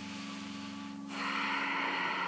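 A woman's long audible breath, starting about a second in and running on past the end, over a faint steady low hum.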